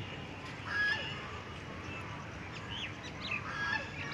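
Domestic goose giving a short honk about a second in. Small birds chirp in the background later on.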